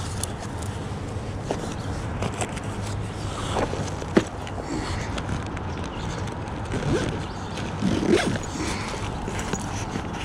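Handling noise from gear on a rocky bank: rustling with scattered small clicks and scrapes, over a steady hiss of wind on the microphone. Faint voices come in briefly near the end.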